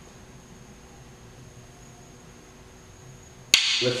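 Quiet room tone, then one sharp click near the end followed by a brief hiss like a breath.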